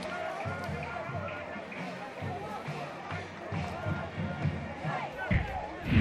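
Faint stadium ambience of crowd noise with distant music and scattered low thuds. Near the end a loud whoosh opens a broadcast bumper jingle.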